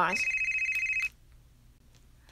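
A telephone ringing: one steady, high electronic ring lasting about a second, cutting off about a second in.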